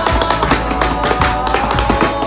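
Tap shoes striking a hardwood floor in quick, uneven bursts of taps over recorded music.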